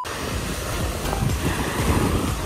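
Wind buffeting the microphone over the wash of small waves breaking on a sandy beach, a steady rushing noise with gusty low rumbles.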